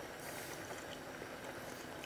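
Faint, steady kitchen background noise with no distinct sound events.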